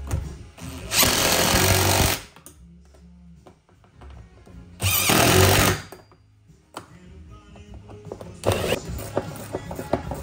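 Yellow DeWalt cordless driver spinning bolts into the roof mount of a golf cart in two bursts of about a second each, a few seconds apart. Near the end, a ratchet wrench clicks as the bolts are snugged by hand.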